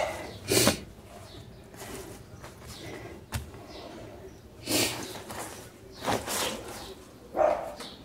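A few short hissing sprays from a trigger spray bottle of degreaser being applied to stained white clothes in a laundry tub, with a single sharp click between them.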